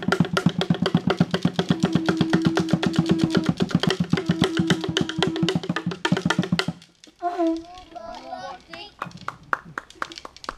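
A conch shell trumpet blown in two long held notes over a fast, even drumbeat, played by children as a performance. The music stops abruptly about seven seconds in.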